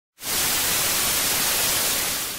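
Television static: a steady, even hiss of white noise, like a TV tuned to no channel, starting a moment in.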